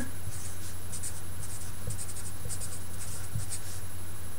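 A felt-tip marker writing on paper: quick, irregular runs of short scratchy strokes as words are written out by hand, over a steady low hum.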